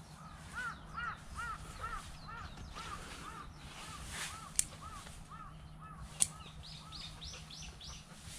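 A bird calling a long run of evenly spaced, arched notes, a little over two a second, that slowly fade. Near the end comes a quicker series of higher notes. Two sharp clicks cut in midway.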